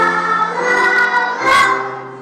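Children's song: several voices singing together over instrumental accompaniment, with a sharp percussive hit at the start and another about a second and a half later.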